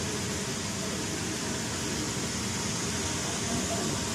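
Steady background noise: a constant hiss over a low rumble, unchanging throughout.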